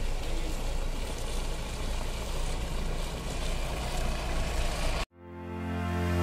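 Mahindra Bolero pickup's diesel engine running as it drives slowly up a muddy track, a steady low rumble. About five seconds in the sound cuts off abruptly and music begins to fade in.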